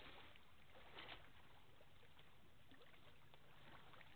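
Near silence: faint outdoor riverside ambience, a low steady hiss with a few faint soft ticks, the clearest about a second in.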